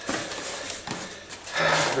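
Cardboard box and its packing being handled: rustling and scraping with a few light knocks. A voice starts near the end.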